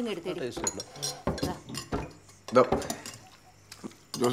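Spoons and cutlery clinking against plates and serving bowls as food is dished out at a dinner table, in many short, scattered clinks. Brief snatches of voices come in between.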